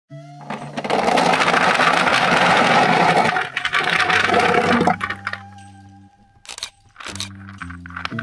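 A jarful of plastic Mathlink cubes poured out onto a plastic tray, a dense clatter of many small cubes tumbling and knocking together for about four and a half seconds, stopping suddenly about five seconds in. A few single clicks of cubes follow near the end.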